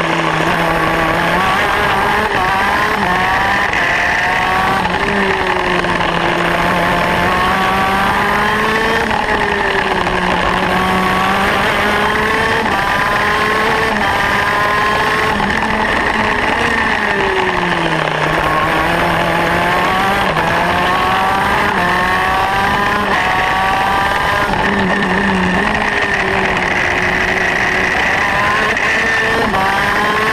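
Modena KZ 125 two-stroke shifter kart engine at racing speed. Its pitch climbs in runs of short rising steps as it goes up through the gears, then falls back several times, about every five to eight seconds, as it slows for corners.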